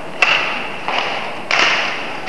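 Badminton rackets striking a shuttlecock back and forth in a quick rally, three sharp hits a little over half a second apart, each ringing on in the hall's reverberation.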